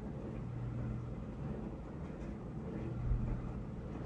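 Steady low background hum and rumble with no speech, and a brief soft low bump about three seconds in.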